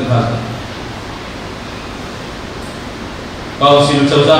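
A man speaking at a lectern microphone breaks off about half a second in and pauses for about three seconds, leaving only a steady hiss of room noise, then starts speaking again near the end.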